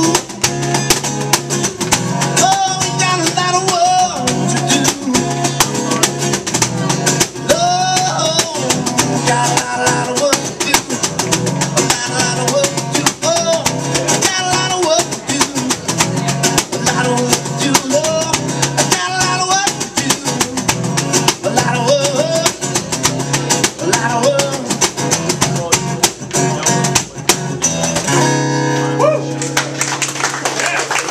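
Acoustic guitar strummed with a cajon beat slapped by hand, with a voice singing wordless lines over it at times. Near the end the beat stops and a final guitar chord rings out.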